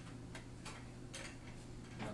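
Quiet classroom room tone: a steady low electrical hum with a few faint, irregular ticks or taps.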